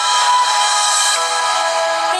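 Music played through the Takee 1 smartphone's rear stereo loudspeakers: layered held notes changing pitch, thin, with almost no bass.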